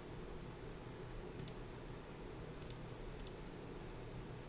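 A computer mouse clicking a few times, faint and sharp, over quiet room tone.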